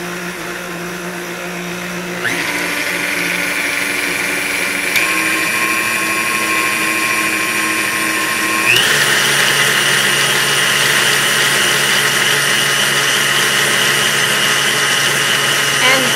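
KitchenAid stand mixer's motor running steadily as its whisk beats egg whites, with hot syrup being added. Its speed is turned up twice, about two seconds in and again near nine seconds, each time with a short rising whine to a higher, louder pitch.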